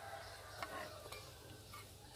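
Faint sound of a metal ladle stirring and scooping boiling water in a wok of corn cobs, with a few light clicks over the hiss of the water.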